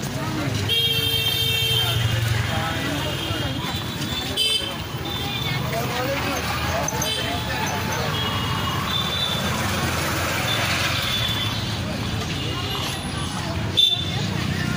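Busy street ambience of voices and traffic, with a vehicle horn sounding for about a second, a second in.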